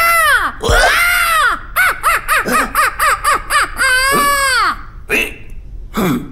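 Booba, the cartoon character, giving high, squawking wordless cries that each rise and fall in pitch: two long ones, a quick run of about eight short ones, then another long one.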